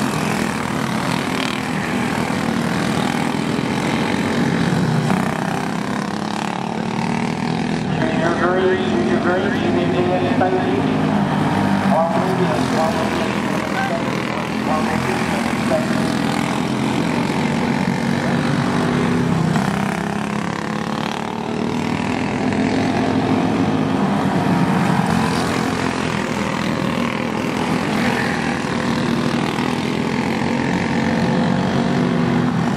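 Jr Champ caged dirt karts racing on a dirt oval, their small engines running continuously at racing speed as the pack laps the track. Voices are heard over the engines for a few seconds, from about eight seconds in.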